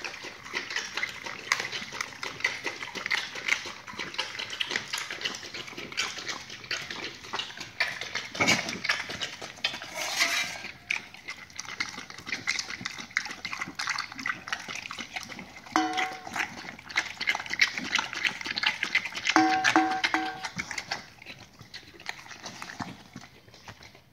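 Pit bull chewing raw duck in wet, clicking bites, then licking and lapping at a stainless-steel bowl. Two brief steady tones sound in the second half.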